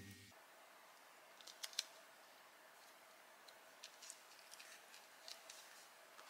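Near silence with a few faint, short clicks and ticks of card stock and small foam adhesive pads being handled. A music track cuts off just at the start.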